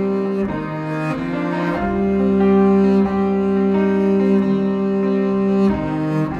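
Instrumental passage of a live acoustic song: long held notes in several voices over a double bass, the chord changing about half a second in, about two seconds in, and again near the end.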